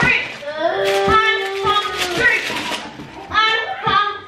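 A child's voice singing, with one long held note about a second in.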